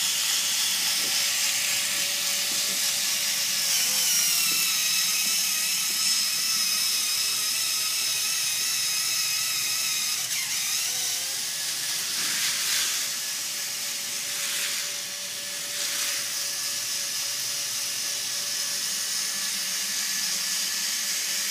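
K'nex roller coaster's small electric motors whining steadily as they drive the chain lift, the pitch dipping briefly about ten seconds in as the load changes. Short rushes of noise between about twelve and sixteen seconds come from the plastic coaster train running along the track. The lift is running a little slow.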